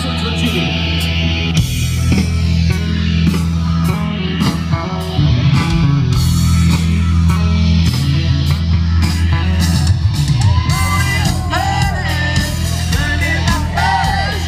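Live rock band playing through loudspeakers, with a steady bass line and drums. In the second half an electric guitar solo comes in with notes bending up and down.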